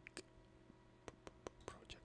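A few faint computer mouse clicks, sharp and spaced about a quarter of a second apart, over near silence.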